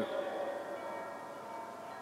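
A pause in a speech over an outdoor public-address system: the echo of the last word dies away at the start, then faint open-air ambience with a thin, steady, chime-like ringing tone at several pitches.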